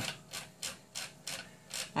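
A series of soft, short scratchy rubbing sounds, about three a second.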